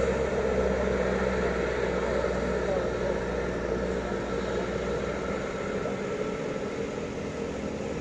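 A minibus engine pulls steadily up a steep climb, its drone slowly fading as it moves away, with bystanders' voices faintly in the background.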